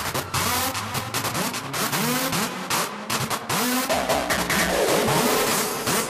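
Hardstyle electronic track in which a sampled car engine revs over and over, its pitch rising and falling a few times a second, mixed with sharp percussive hits.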